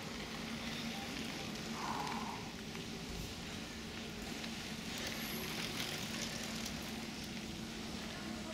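Several cross-country mountain bikes riding past close by on a dirt forest track: a noisy rolling sound of tyres on dirt and dry leaves with faint clicks, over a steady low hum.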